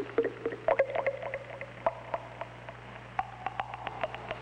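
A liquid bubbling and popping: irregular clicks and short pitched pops, with a brief held tone near the end.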